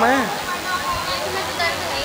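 A man's spoken word ends at the start, then a steady rushing background noise runs on with faint voices of other people in the room.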